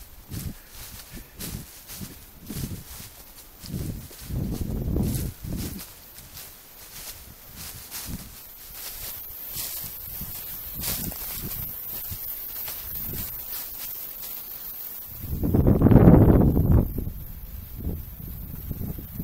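Footsteps through dry leaves on a woodland trail, about two steps a second, with a loud low rush of noise near the end.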